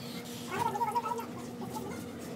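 Chicken clucking: a quick string of short calls about half a second in, over a steady low hum.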